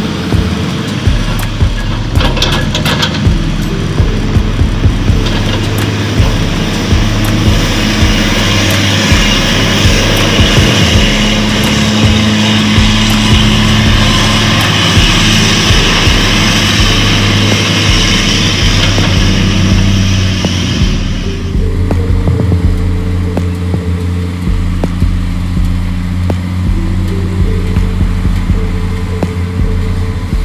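Diesel engines of a Hino 500 dump truck and a Hitachi excavator running, mixed with background music. The higher part of the noise drops away about twenty-one seconds in.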